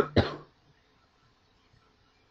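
A man's short cough, once, at the very start.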